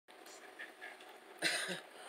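A person's single short cough about one and a half seconds in, over faint hiss.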